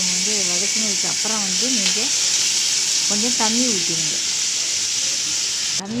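Chopped onion, tomato and green chilli frying in oil in a kadai, making a steady loud sizzle.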